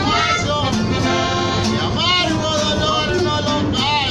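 Live norteño music: an accordion and a strummed bajo sexto accompany a man singing, with a steady strumming rhythm.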